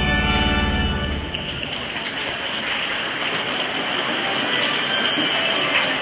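A church organ holding a chord that stops about a second in, followed by a steady hubbub of people moving and murmuring in the pews, with scattered small clicks and rustles.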